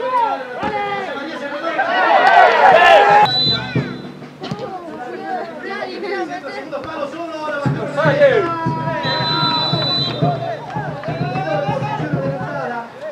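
Football play-by-play commentary in Spanish, continuous and animated, with a few drawn-out held notes, over background chatter.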